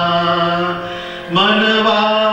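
Man singing a Swaminarayan devotional bhajan with harmonium accompaniment: one long note held, then a new, slightly higher phrase starting sharply about one and a half seconds in.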